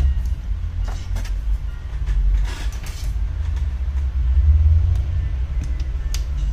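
A steady low rumble, with a few light clicks and a short scrape about two and a half seconds in as the aluminium bottom case of a MacBook Pro is handled and lifted off.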